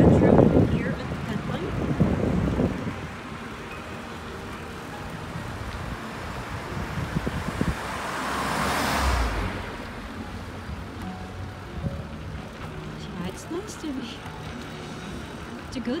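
Roadside traffic noise, with one car passing close by about halfway through: its tyre and engine noise swells to a peak and fades away.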